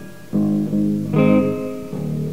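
Guitar accompaniment between sung lines of a song: one chord struck about a third of a second in and another a little after a second, each left ringing.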